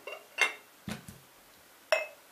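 A few short clinks of glass against glass, as a glass tumbler of sunflower oil is tipped over empty glass jars, with a dull knock about a second in. Two of the clinks ring briefly.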